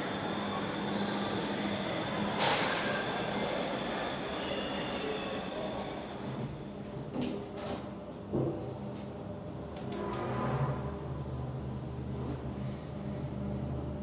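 KONE elevator car travelling down: a steady low hum from the drive, with a sharp click about two and a half seconds in. The hum grows stronger from about halfway, and a faint high whine joins it.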